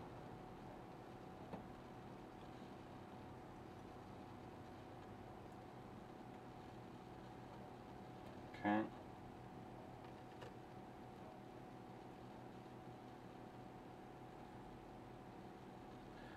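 Quiet room tone with a faint steady hum, and a couple of tiny ticks; a single spoken "okay" about halfway through.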